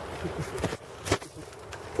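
A few irregular knocks and rustles from a handheld camera being moved about, with a brief faint murmur of voice near the start.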